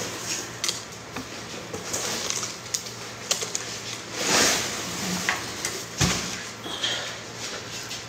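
Scattered small clicks and knocks of things being handled, with a short rustling swell about four seconds in and a sharper knock about six seconds in.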